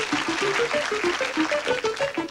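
Press Your Luck game board spinning: a rapid run of short electronic bleeps, each at a different pitch, several a second, as the light skips from square to square before the player hits the stop button.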